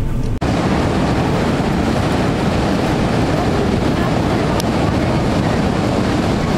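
Wind on the camera microphone over breaking ocean surf: a loud, steady, rushing noise. It follows a brief car-cabin road hum that cuts off suddenly under half a second in.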